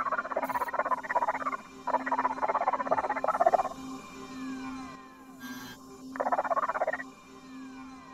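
A cartoon character's voice gabbling in an invented, non-human language, rapid and chattering, in three bursts: two long phrases in the first half and a short one near the end. Under it run a steady electronic hum and repeated falling electronic tones.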